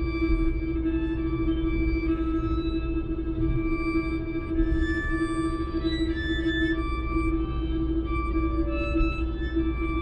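Layered, looped bowed-string music: a held drone note under slow, overlapping sustained tones that enter and fade.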